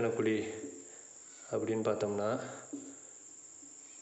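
A man speaking in two short stretches with a pause between, over a faint, steady, high-pitched tone in the background.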